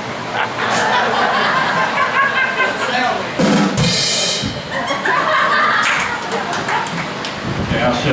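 Audience and band members laughing and chattering together in a live hall, with a single cymbal crash from the drum kit near the middle.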